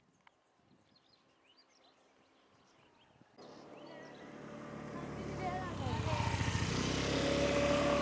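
Faint chirps, then, about a third of the way in, a motor vehicle's engine starts to be heard and grows steadily louder as it approaches, with voices mixed in.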